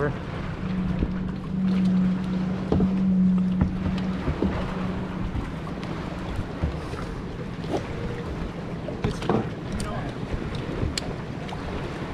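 Plastic kayaks and paddles knocking now and then on the water, with wind on the microphone. A steady low mechanical drone runs through the first four seconds or so, then fades.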